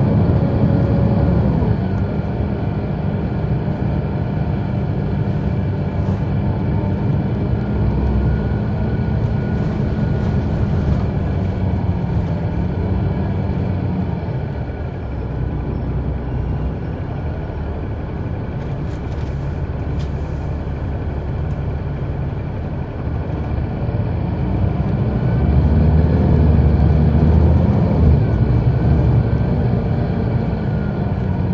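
Caterpillar C-9 ACERT diesel engine of a 2004 Neoplan AN459 articulated transit bus, heard from inside the bus as it pulls under load. The engine eases off about halfway through and pulls harder again near the end, louder and higher in pitch.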